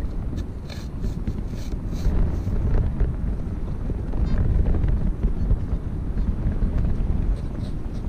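Strong wind buffeting the microphone, a steady low rumble, with a few faint scrapes and knocks of a metal beach sand scoop digging into sand.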